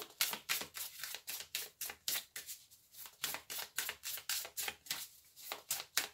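A deck of tarot cards being shuffled by hand: a run of quick clicks, about four or five a second, uneven in strength.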